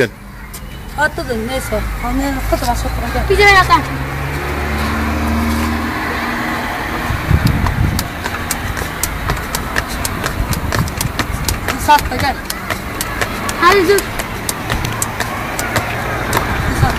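A man's voice calling out in short shouts over outdoor street noise, with a motor vehicle's engine running low through the first few seconds.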